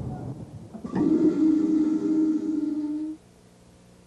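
Truck air brake being applied: a rush of air, then a sharp onset about a second in and a steady low tone with overtones that holds for about two seconds and cuts off suddenly.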